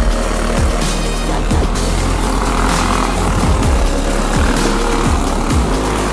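Electronic music with a steady kick-drum beat, and under it the buzz of racing go-kart engines, which swells in the middle as the pack goes by.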